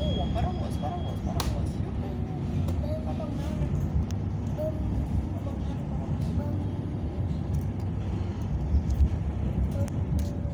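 Steady low rumble of the Intercity+ EKr1 electric multiple unit running at speed, heard from inside the passenger car, with a few faint clicks from the wheels and car body.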